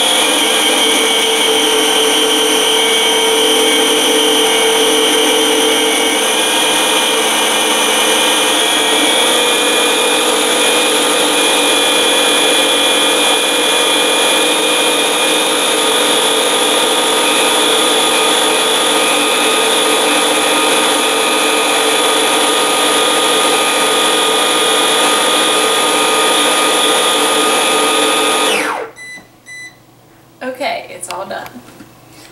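Baby Breeza steamer-blender's motor blending freshly steamed sweet potato into puree, a loud, steady whine. It is the automatic blend stage after steaming, and it cuts off suddenly near the end.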